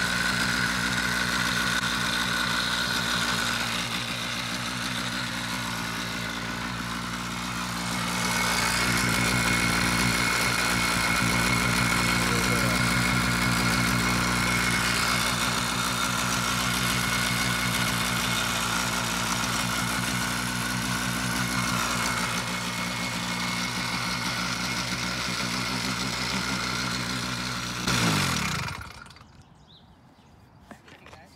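Bicycle-mounted 80cc two-stroke engine kit idling, shaking and rattling the bike. It gets louder about eight seconds in, and near the end it is shut off, its pitch dropping as it dies.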